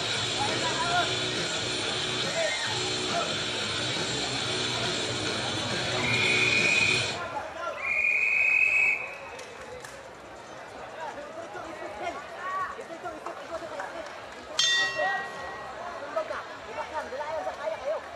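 Music with a beat over the PA plays and cuts off about seven seconds in, while a ring bell sounds twice, each ring about a second long, starting the round. Crowd chatter and shouts follow, with one sudden sharp sound near fifteen seconds.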